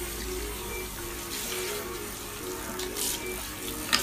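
Water running steadily from a salon shampoo basin's handheld sprayer onto wet hair and into the ceramic basin, rinsing out a hair mask. A short click comes near the end.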